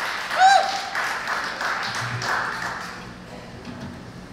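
Audience applause and clapping after a song ends, with one short whoop about half a second in; the applause dies away over the next couple of seconds.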